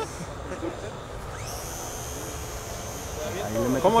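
Wind rumbling on the microphone. From about a second and a half in, a steady high-pitched whine comes in and holds: the electric motor and propeller of a radio-controlled E-flite Piper J3 Cub flying overhead. A man's voice starts near the end.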